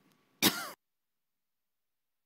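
A woman's single short cough about half a second in, cut off abruptly.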